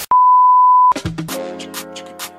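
Colour-bar test-card tone: one steady, high, pure beep lasting just under a second. Music with a beat starts right after it.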